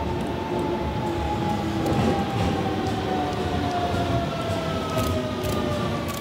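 A JR Central 373 series electric multiple unit, nine cars long, running through a station without stopping. It gives a steady rumble with a high whine that slowly falls in pitch as it draws near, and a few sharp clicks near the end as the front car passes close.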